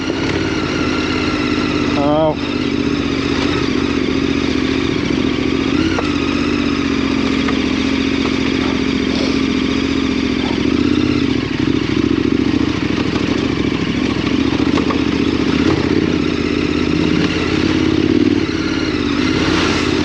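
KTM 1290 Super Adventure R's V-twin engine, fitted with a Wings aftermarket exhaust, running at a steady, even engine speed while the bike is ridden along a muddy off-road lane.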